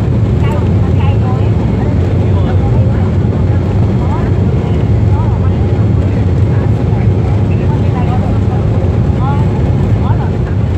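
Airliner cabin noise on the runway: a loud, steady rumble from the engines and wheels, heard inside the cabin.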